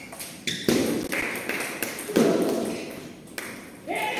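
Celluloid-style table tennis ball in a rally: a string of sharp ping-like hits off the rackets and the table, roughly one every half second, with the hall ringing briefly after each.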